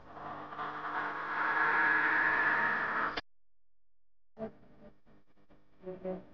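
A steady buzz with a pitch, swelling over the first two seconds and cutting off abruptly about three seconds in; after a second of silence, faint clicks and taps of paper being handled.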